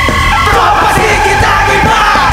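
Live rock band playing loudly: electric guitar holding bending notes over drums, with the vocalist yelling into the microphone.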